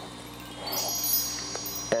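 Wind-chime-like music: many bright, high chime tones come in about half a second in and keep ringing together.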